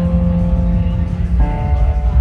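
Live electronic keyboard music: held chords, with a change of chord about one and a half seconds in, over a deep low rumble.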